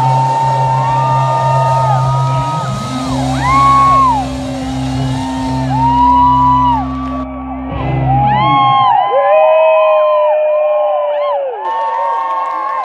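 Live rock band holding a final chord with a sustained low bass note, while audience members whoop and shout. The band stops about eight or nine seconds in, and the whooping carries on.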